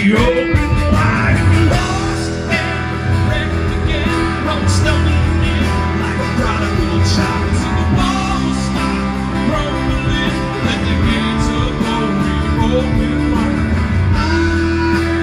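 Live band playing a song with acoustic and electric guitars.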